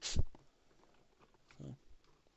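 Hands handling a plastic toy figure: a short knock right at the start, then faint small clicks, and a brief low hum-like sound about one and a half seconds in.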